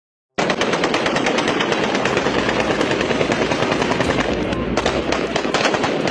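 Sustained automatic gunfire: rapid, overlapping shots with no pauses, starting abruptly about half a second in.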